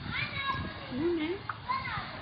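Background voices, with children's voices among them, calling and talking indistinctly.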